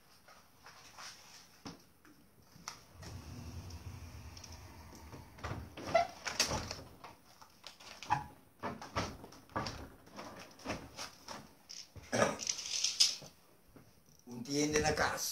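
Irregular knocks, bumps and rustles of someone moving about in a small room, with a short hissing noise a little before the end.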